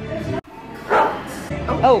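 Young women's voices chatting and exclaiming over background music. The sound cuts out abruptly about half a second in, then resumes with a high, swooping "oh" near the end.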